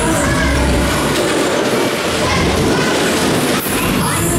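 Cosmont Berg- und Talbahn cars rolling fast around the undulating track: a dense, steady rumble of wheels on the rails, heard from on board.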